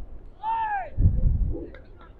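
A single shout from the pitch, rising then falling in pitch, followed by a brief low rumble.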